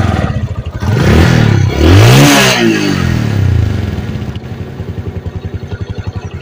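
Bajaj Discover 135 single-cylinder motorcycle engine, just started, revved up twice and then settling back to a steady, evenly pulsing idle.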